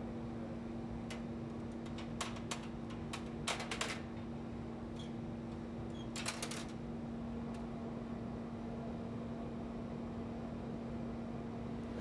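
Steel hand shears snipping thin glass tubing, giving a scattered run of sharp clicks and light clinks as the glass snaps and cut pieces drop onto a sheet-metal tray. The clicks stop after about seven seconds. A steady low hum of shop equipment runs underneath throughout.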